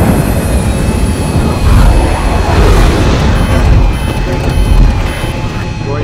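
F-35 fighter jet flying past overhead, its jet engine noise loud and swelling and ebbing several times, with a thin high whistle near the start.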